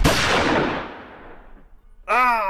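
A single pistol shot from a film soundtrack, loud and sudden, ringing out and dying away over about a second and a half.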